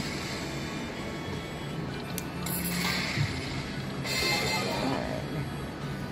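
Eyes of Fortune slot machine playing its game music and chimes while the reels spin and value orbs land, with two brighter chiming flourishes about two and a half and four seconds in.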